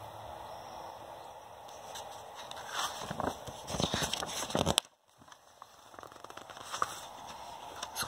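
A picture book's paper page being turned by hand: rustling and sliding paper, loudest about three to five seconds in, with fainter handling noises near the end.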